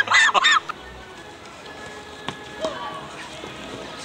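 A man laughing heartily in quick repeated bursts, breaking off about half a second in; after that only a quieter outdoor background with a couple of faint knocks.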